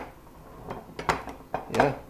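Filled glass mason jars being shifted and set down on a granite countertop: a few light knocks and clinks, the sharpest about a second in.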